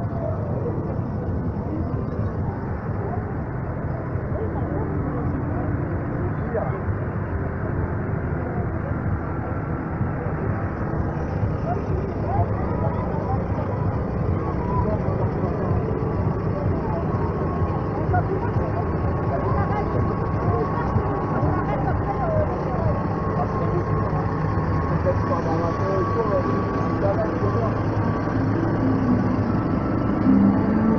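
Massey Ferguson farm tractor's diesel engine running steadily at low revs as it slowly pulls a float, with people chatting around it.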